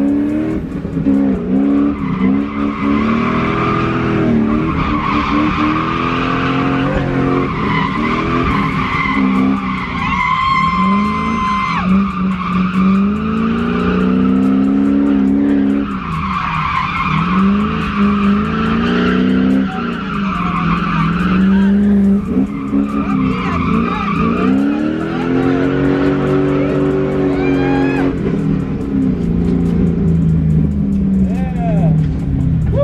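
Drift car's engine revving up and falling back again and again, with tyres squealing and skidding as the car slides, heard from inside the cabin. There is one long steady tyre squeal about a third of the way in.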